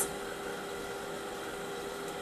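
Steady background hiss with a faint constant hum: the room tone and noise floor of the recording.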